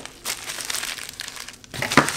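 Plastic packaging crinkling and rustling against cardboard as a camera box is unpacked by hand, with a sharper crackle near the end.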